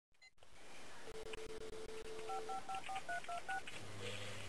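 Telephone dial tone, a steady two-note hum about a second and a half long, followed by seven quick touch-tone key beeps as a number is dialed.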